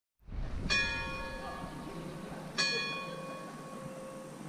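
A large tower bell struck twice, about two seconds apart, each stroke ringing on and slowly dying away.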